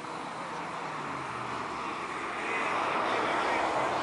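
A vehicle passing, its noise growing steadily louder and loudest near the end, over faint distant voices.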